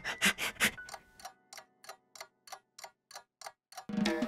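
Clock-like ticking sound effect: a quick run of sharp ticks that slows from about six a second to about three a second and grows fainter.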